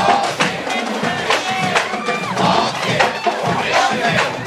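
Marching band drum cadence: repeated sharp drum strikes, with crowd noise and shouting voices around them.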